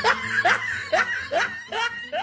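A person laughing in short, evenly spaced bursts, about two to three a second.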